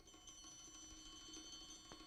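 Near silence with a faint steady tone.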